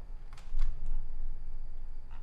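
A few light, sharp clicks from computer controls as the page is scrolled and worked, with a duller low thump about half a second in.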